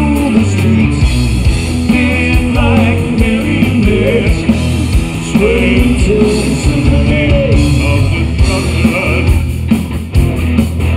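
Live heavy rock band playing loud through a club PA: distorted electric guitars, bass and drums, with a sung lead vocal over the top.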